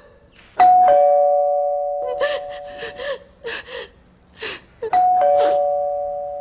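A two-tone doorbell chime rung twice, about four seconds apart, each time a high note then a lower one ringing out and fading slowly, over a woman's sobbing breaths.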